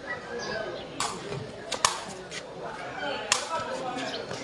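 Sepak takraw ball being kicked during a rally: several sharp smacks about a second apart, the loudest about two seconds in, with spectators talking underneath.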